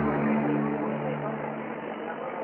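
Ambient synth pad played back from tape on a modified Walkman transport: a low sustained drone with gritty tape tone and a subtle speed wobble from an LFO varying the motor speed. The lowest notes fade out near the end.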